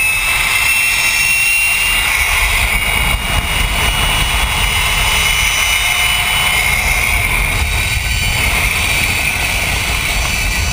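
Zipline trolley's pulley wheels running at speed along the steel cable, giving a steady high whine that edges slightly up in pitch and then holds. Under it, wind rushes over the microphone as the rider travels.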